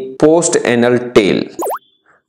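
A man's voice speaking, then, about one and a half seconds in, a short synthetic 'plop' sound effect with a quick pitch glide down and back up. It is a slide-animation cue marking the highlight moving to the next point.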